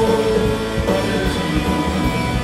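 Live rock band playing loud: electric guitars and bass guitar over drums, a full, steady mix.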